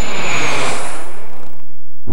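A vehicle driving past at speed: a rush of noise that swells and fades over about two seconds, with a thin high whine falling in pitch as it goes by.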